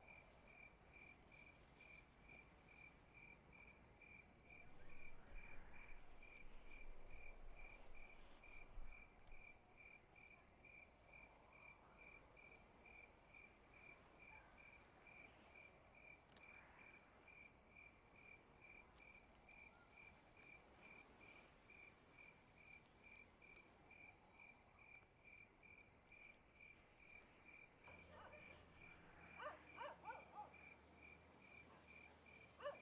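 Faint night insect chorus: crickets chirping in a steady, evenly spaced pulse over a continuous high trill. A louder patch of low rustling comes a few seconds in, and the insects stop abruptly near the end.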